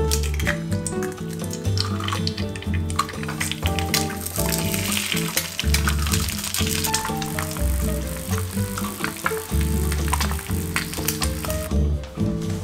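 Background music, with the faint sizzle of eggs frying in oil in a small rectangular tamagoyaki pan underneath it.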